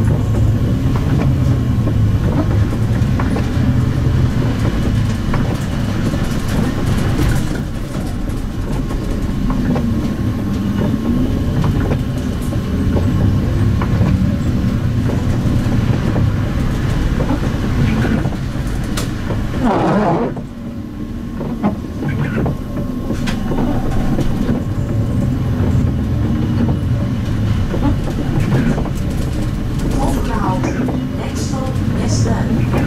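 Cabin sound of a MAN Lion's City CNG city bus on the move: a steady low rumble of engine and road, with scattered interior rattles and clicks. The sound drops briefly about twenty seconds in.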